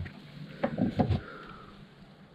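A handful of light knocks and handling sounds, about half a second to a second in, as an empty plastic jug is lifted off a shelf.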